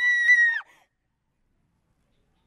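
A girl's scream of fright: one high-pitched cry held at a steady pitch, cutting off about half a second in.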